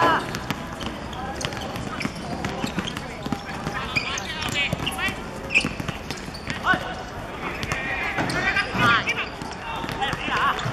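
Footballers shouting and calling to each other during play, with occasional thuds of the ball being kicked.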